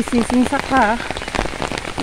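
Steady rain falling, with a constant patter of many drop ticks. A voice speaks briefly in the first second.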